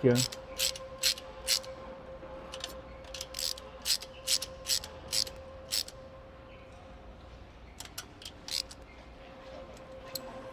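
Hand ratchet wrench clicking as a bolt is tightened down, a run of short, irregular clicks for about the first six seconds and a few more near the end, over a faint steady hum.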